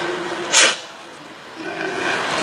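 A man sharply sucks air in through his mouth once, a short loud hiss about half a second in. It is the first step of a breathing exercise: drawing air in before gulping and swallowing it.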